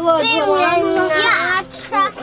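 Young children's voices calling out in play. The voices are high-pitched and drawn out, and they stop shortly before the end.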